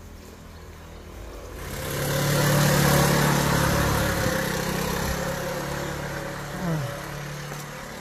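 A motor vehicle passing close by. Its engine hum swells from about a second and a half in, is loudest around three seconds, then slowly fades away.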